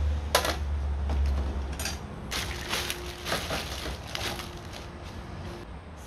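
Steel hitch-mount bicycle carrier clunking and rattling as it is handled and set down on a dial kitchen-type scale: one sharp clack about half a second in, then a burst of metal clatter and ticking for about a second from two seconds in, with scattered ticks after. A low rumble lies under the first two seconds.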